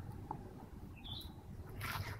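Quiet low background hum with one short, high chirp about a second in, from a small bird.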